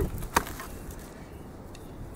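A single sharp wooden knock about a third of a second in, as a piece of split firewood is put down on the forest floor, followed by faint handling ticks.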